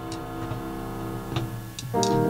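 Church worship band playing softly: a held keyboard chord with a few light percussion taps.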